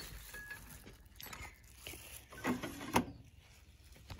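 Quiet handling of a porcelain evaporating dish and metal crucible tongs at an analytical balance: a few light clicks as the dish is set down, and one sharp click about three seconds in.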